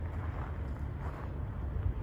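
Wind buffeting the microphone outdoors: a steady, fluttering low rumble.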